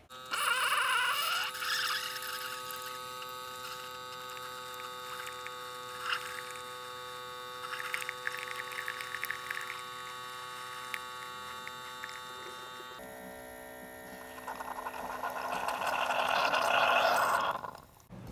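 Keurig single-serve coffee maker brewing: its pump hums steadily while coffee streams into a ceramic mug, with a few light clicks and gurgles. Near the end a louder hissing sputter builds up.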